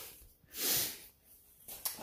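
A single short puff of breath blown at a carbide lamp's acetylene flame to put it out, about half a second in, followed by a faint click near the end.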